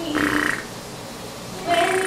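A baby's short croaky, buzzing vocal sounds: one near the start, then another near the end.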